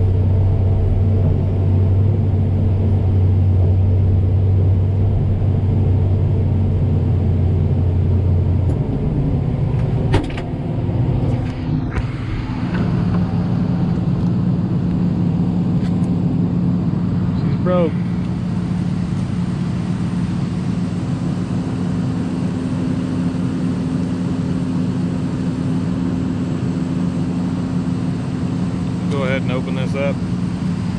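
John Deere excavator's diesel engine and hydraulics running under load while digging. The steady low drone drops away about nine seconds in, there is a sharp knock at about ten seconds, and then a higher steady tone carries on.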